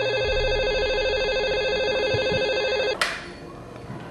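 Telephone ringing: one continuous electronic trilling ring lasting about three seconds, then cut off by a sharp click.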